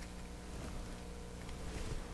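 Quiet room tone with a faint steady hum and no distinct sound events.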